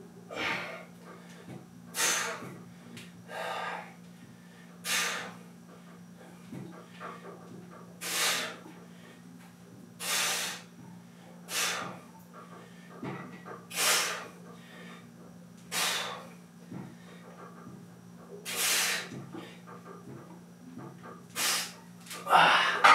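A man's short, sharp breaths, about eleven of them at uneven gaps of one to three seconds, as he works through deep-squat calf raises. A steady low hum runs underneath.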